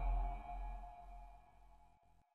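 The fading tail of a logo sting: a deep boom and sustained ringing tones die away over about a second and a half.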